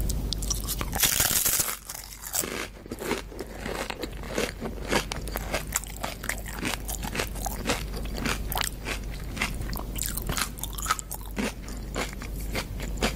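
Crunching and chewing of a tortilla chip loaded with salad and guacamole: a loud crunching bite about a second in, then a run of sharp, irregular crunches as it is chewed.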